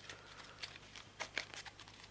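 A deck of sleeved Yu-Gi-Oh trading cards being shuffled by hand: a faint, soft shuffling with a few light clicks of the cards, mostly in the second half.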